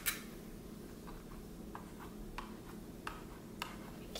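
A paint-dipped fork tapped repeatedly against an upside-down paper plate: light, irregular ticks, about two a second.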